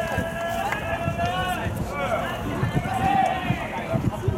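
Baseball players' field chatter: several voices yelling long, drawn-out calls, with a low rumble of wind on the microphone.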